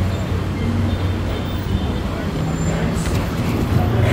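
Steady road traffic noise: a continuous low hum of passing vehicles.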